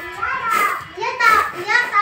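Children's high-pitched voices talking, the loudest sound, over a rhythmic swish of unhusked glutinous rice grains being shaken in a round woven winnowing tray, about one swish every 0.7 seconds.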